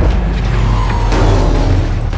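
Loud action-movie score, with explosion and crash sound effects under it.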